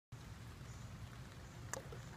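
Faint low background rumble, with a single short click near the end.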